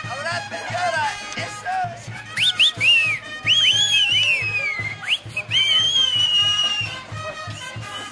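Brass band playing huaylash dance music with a steady beat, while someone whistles loudly over it: a run of sharp rising and falling whistles from about two seconds in, ending in one long whistle that slowly falls away near the end.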